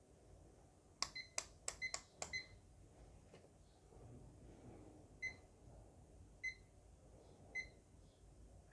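Uni-T UT61B+ digital multimeter: a quick run of about five clicks from its rotary function switch, mixed with short beeps from its buzzer, about a second in. Then three separate short beeps about a second apart as its buttons are pressed.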